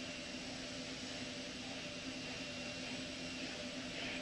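Steady hiss with a faint low hum and a faint high tone that stops near the end: the background noise of the launch broadcast audio between announcements.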